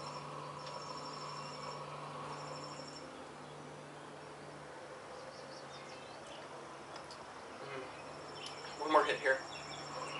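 Evening insects chirping in short, repeated high-pitched trills over a low steady hum.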